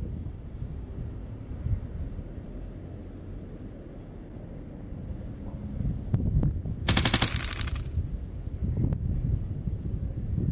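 Wind buffeting the microphone, a low rumble that swells and fades. About seven seconds in comes a rapid rattle of clicks lasting under a second, the loudest sound.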